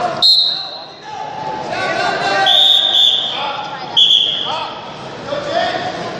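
Referee's whistle blown three times in a large hall: a short blast right at the start, a longer one about two and a half seconds in, and a short one at four seconds. Shouting voices from the mat side fall between the blasts.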